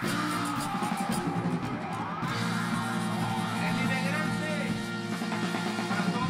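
Live Latin funk band playing, with a horn section of trumpet, trombone and saxophone and a male singer's voice over it. In the second half the band holds long, steady chords.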